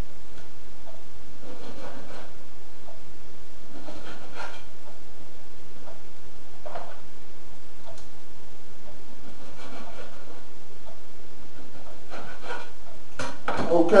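Knife cutting pieces of whiting fish on a cutting board: a short chop or scrape every couple of seconds, over a steady hum.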